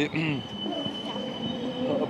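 A steady high-pitched squeal, held for about a second and a half over street noise, with a brief bit of a man's voice at the very start.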